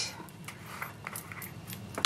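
Quiet handling noises: card stock and paper shifting and the plastic screw lid of a small embossing powder jar being twisted off, with faint scattered clicks and a sharper click near the end.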